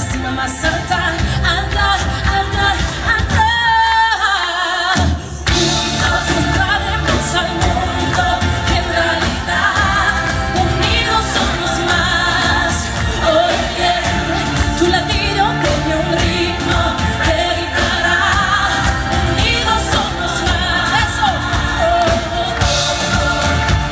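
Live pop band with electric guitar, bass guitar, drum kit and keyboard playing behind a woman singing lead. About three and a half seconds in the band drops out under a held, wavering vocal note, then comes back in with a hit about five seconds in.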